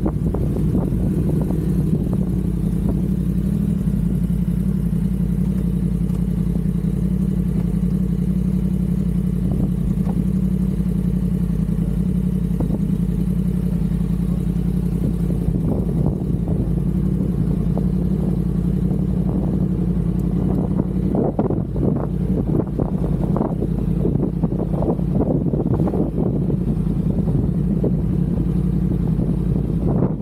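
2015 Yamaha R1's crossplane inline-four engine idling steadily. In the last third, irregular knocks and rustles are heard over the idle.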